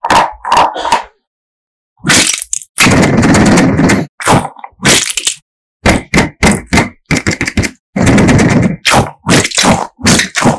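Close-miked crackling and squelching in short bursts with silent gaps between, from a gel squishy toy filled with water beads being squeezed and pulled. Two longer bursts come about three and eight seconds in.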